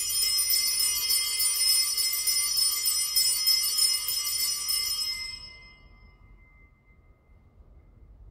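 Sanctus bells, a cluster of small altar bells, shaken continuously for about five seconds and then left to ring away. They are rung to mark the elevation of the chalice at Mass.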